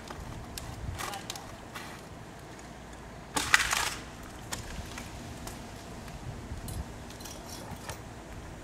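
A roped cottonwood limb swinging down off the trunk, with one brief, loud crackling rush of wood and leaves about three and a half seconds in and a few light knocks before it.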